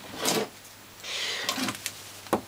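Old solid-core copper house wiring cable being twisted and pulled by hand: a short scrape near the start, a rustling rub about a second in, then a few light clicks.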